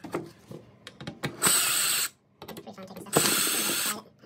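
Cordless drill with a Phillips bit running in two short bursts about a second apart, backing out screws, with light handling clicks between them.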